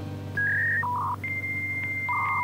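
Electronic beeping sound effect: a few short beeps at different pitches, then a long steady high beep with a lower beep joining it near the end, like phone-keypad tones, over a low steady hum.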